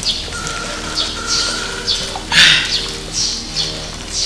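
Small birds chirping in the background: short, falling chirps repeating about once or twice a second, with a louder burst a little past halfway.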